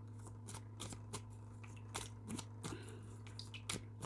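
Tarot cards being shuffled and handled: a scatter of light, quick card clicks and snaps, over a steady low hum.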